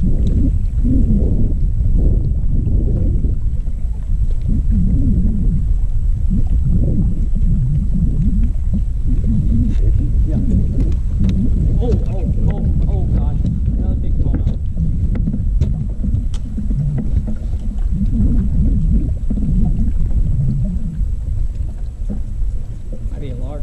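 Wind buffeting the microphone of a boat-mounted camera: a loud low rumble that keeps swelling and dipping, with a faint thin high tone running steadily underneath.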